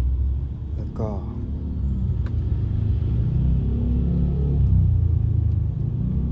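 Steady low rumble inside a car cabin, typical of the car being driven, with a faint melody of music rising over it in the middle.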